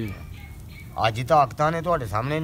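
A man talking, starting again about a second in after a brief lull.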